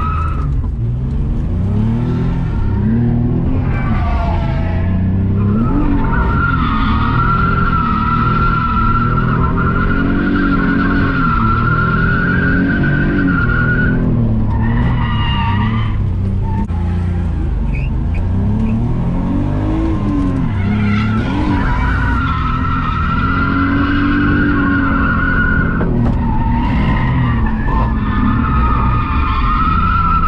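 A BMW E46 drifting, heard from inside the cabin: the engine revs rise and fall again and again as the throttle is worked, and the tyres squeal in two long, steady stretches, one in the middle and one near the end.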